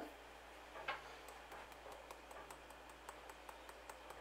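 Ground nutmeg being shaken from a spice shaker over a bread and butter pudding: faint, even ticks about four or five a second, after a single small click about a second in.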